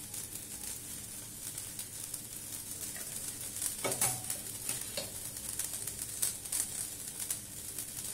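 Ground green-pea filling with freshly added ground spices sizzling softly in oil in a non-stick wok, with light, irregular crackles.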